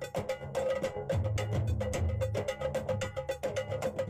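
Intro jingle music: a fast, steady run of light percussion strikes over a held tone and a low bass line.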